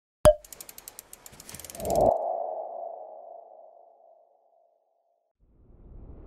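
Sound effects for an animated logo: a sharp click, then a quick run of ticks leading into a hit with a ringing tone that fades over about two seconds. After a short silence a whoosh swells near the end.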